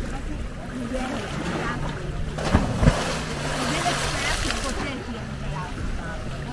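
A person jumping into the sea off a wooden pier: two sharp knocks about halfway through, then a burst of splashing water. A motorboat engine hums low and steady, with people's voices in the background.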